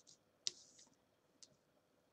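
Faint handling of playing cards on a table: a card put down with a sharp click and a short slide about half a second in, and a lighter click near a second and a half.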